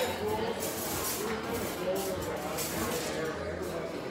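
Indistinct background chatter of diners talking in a restaurant, with no one voice standing out.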